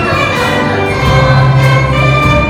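Youth orchestra with a string section playing live, with a choir singing along. A low note is held for about a second in the second half.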